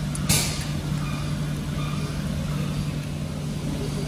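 Steady low hum of repair-shop machinery, with a short hissing scrape about a third of a second in as pliers work on parts in the engine bay.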